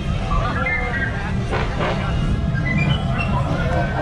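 Steady wind rumble on the microphone as a teacup ride spins fast, with voices and music in the background.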